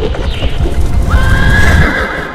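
Loud cinematic sound effects over music: a heavy low rumble with rapid clattering thuds, then a high, held, slightly wavering cry that starts about a second in.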